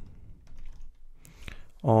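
Computer keyboard typing: a short run of light keystrokes.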